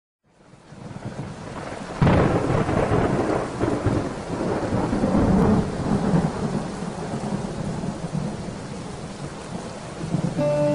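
Steady rain that fades in over the first second; about two seconds in a loud clap of thunder breaks and rumbles away over the next few seconds while the rain keeps falling.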